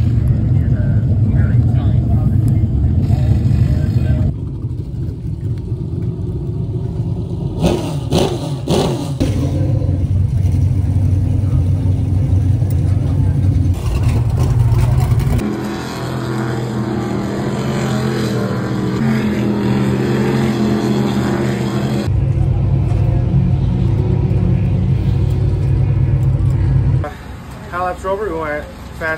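Race car engines running, their low steady sound changing abruptly several times, with a few sharp knocks about eight seconds in.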